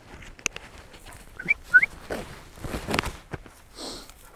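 Footsteps through heather with the rustle and knock of clothing and kit as a man walks uphill. About a second and a half in come two short rising squeaks.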